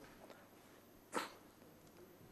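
Near silence in a pause between speech, broken about a second in by one short, sharp intake of breath at the microphone.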